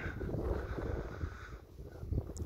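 Low, uneven rumble of wind buffeting a phone microphone outdoors, dying down near the end.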